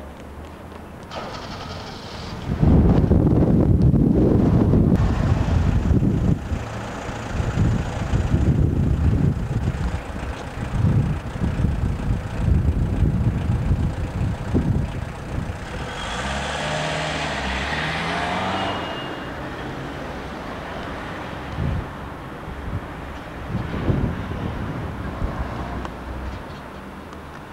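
Street traffic: motor vehicles running past, a loud uneven low rumble that rises about two and a half seconds in, with a hissier passing noise around two-thirds of the way through.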